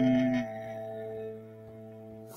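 Piano's final chord held and ringing out, fading steadily; the strongest held note stops about half a second in.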